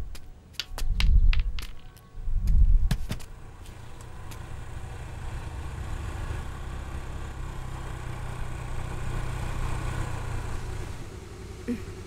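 Three deep booms with sharp clicks in the first three seconds, then a motor scooter's small engine running as it approaches, growing gradually louder and easing off near the end.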